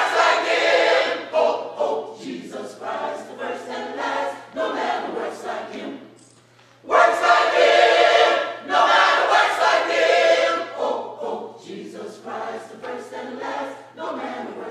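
Church gospel choir of mixed women's and men's voices singing together in full harmony. The singing stops for about a second near the middle, then the choir comes back in loudly.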